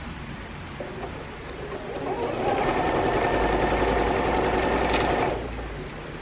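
Electric sewing machine stitching patchwork quilt pieces. It runs quietly at first, gets much louder from about two seconds in, and eases off again near the end.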